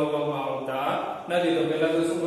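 A man lecturing in Gujarati in a steady, sing-song teaching voice, with short pauses between phrases.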